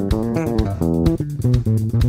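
Squier Affinity Jazz Bass played through a small combo bass amplifier: a quick run of plucked single notes, several a second.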